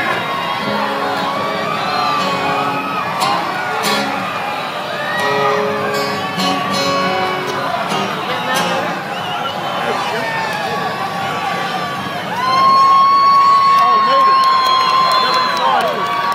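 Concert crowd cheering and whooping over a band's acoustic guitars and instruments. Near the end a long, high held vocal note rises over the noise and is the loudest sound.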